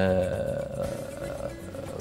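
A man's voice holding one drawn-out, steady vocal sound, like a long hesitation 'aah' between phrases, for about a second and a half before it fades.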